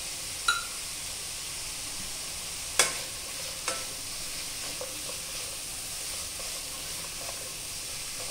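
Sliced onion, cabbage, carrot and capsicum sizzling steadily in oil in a nonstick kadai as a spatula stirs them, with a few sharp knocks of the spatula against the pan, the loudest about three seconds in.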